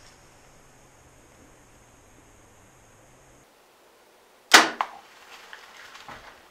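A single sharp crack of a compound bow being shot at a mouflon ram about four and a half seconds in, followed at once by a smaller click and faint rustling.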